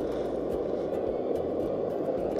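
Liquid-fuel backpacking stove burning steadily under a pot of water, an even low rushing noise with no change in level.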